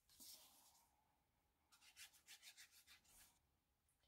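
Faint rubbing and scratching of paper cardstock being handled and glued, with a short rub near the start and a run of quick short strokes in the middle.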